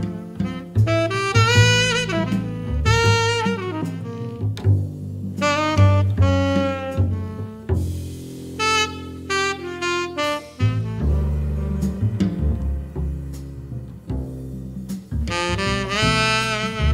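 Tenor saxophone playing a slow jazz ballad melody in phrases of a few seconds each, over upright double bass. The horn drops out for a few seconds past the middle while the bass carries on, then comes back in near the end.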